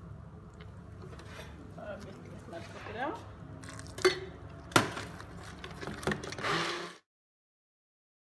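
Electric stick blender running in a steel pot, puréeing boiled carrots, with a steady low motor hum. Two sharp knocks, the loudest sounds, come about four and five seconds in as the blender head strikes the pot. The sound cuts off suddenly about seven seconds in.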